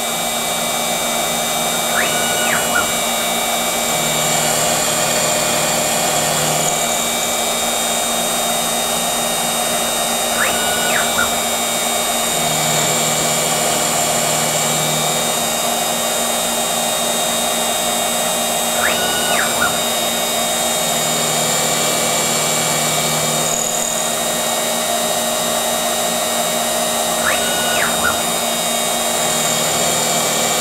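X2 mini mill with a scratch-built servo-driven 4th axis turning an aluminum part with a carbide insert. The machine runs steadily, and the same cycle comes back about every eight and a half seconds: a brief whine that rises and falls, then a few seconds of lower hum.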